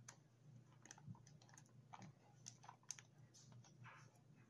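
Faint, irregular small clicks and crinkles over a low hum: a plastic zip-top bag being handled while a wooden chopstick scoops sticky persimmon paste out of it.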